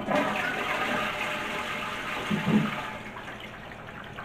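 A toilet with a wall-mounted plastic cistern being flushed: a rush of water that is loudest at first and dies down over the next few seconds. The newly plumbed toilet working.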